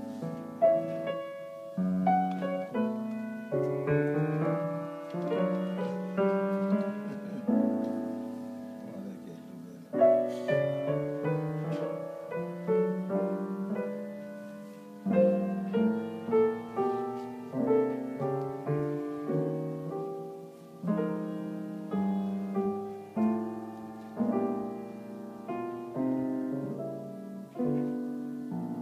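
Solo piano playing a jazz passage of chords, each struck and left to ring and fade, with a fresh chord or short run about every second.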